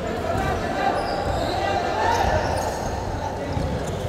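Basketball dribbled on a wooden gym floor, with players' voices calling across a large echoing hall during live play.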